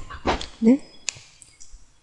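A short voiced hesitation sound from the narrator, then a single sharp click about halfway through, typical of a computer mouse button being pressed.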